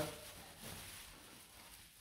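Faint crinkling and rustling of a plastic clinical waste bag as its twisted neck is handled and looped over.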